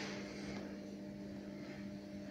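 Room tone in a pause of speech: a steady low hum made of a few fixed tones, with a faint hiss.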